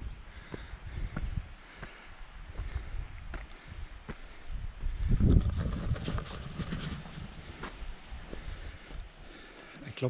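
Wind buffeting the camera microphone in low rumbling gusts, loudest about five seconds in, over the scattered footsteps and heavy breathing of a hiker climbing a steep, wet trail.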